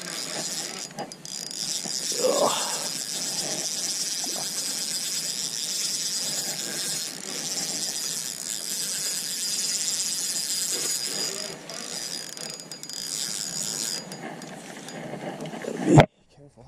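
Spinning reel cranked steadily to reel in a hooked pike, its gears giving a continuous high mechanical whir with a thin whine; the reeling stops about two seconds before the end.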